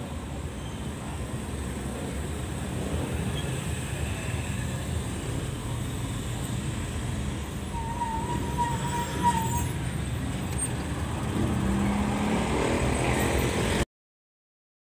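Road traffic passing a stopped truck, with a steady low engine rumble that grows slightly louder toward the end. A short high-pitched beep sounds about eight seconds in, and the sound cuts off suddenly just before the end.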